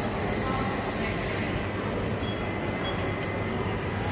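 Steady background noise of an indoor market hall, with faint, indistinct voices in the distance.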